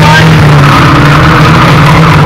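Several banger-racing cars' engines running and revving as they drive round the track, very loud and overloading the microphone.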